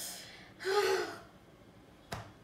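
A woman's gasp: a quick breath right at the start, then a short, breathy voiced cry about half a second later.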